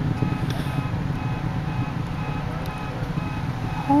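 Space Shuttle Discovery's launch rumble, a steady deep roar carried from miles away as the shuttle climbs. Over it, car alarms go off with repeated beeping tones.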